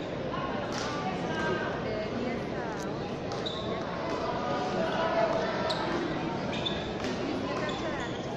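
Rubber frontball ball smacking off the front wall and court floor during a rally, sharp knocks coming every second or two, over the steady murmur of a crowd in a large hall.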